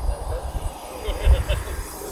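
Faint voices talking in the background over an irregular low rumble that swells and fades.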